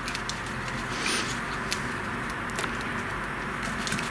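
A few light clicks and taps as a small magnet and 3D-printed plastic bracket parts are fitted by hand, over a steady low hum and hiss.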